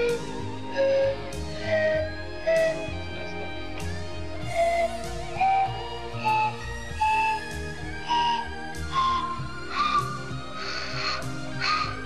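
Homemade pan flute made of plastic tubes, blown one note at a time, each note starting with a breathy puff of air. The notes climb gradually in pitch, like a slow rising scale.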